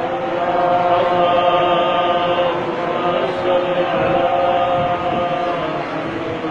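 Men's voices in a drawn-out devotional chant, with notes held for a second or two at a time.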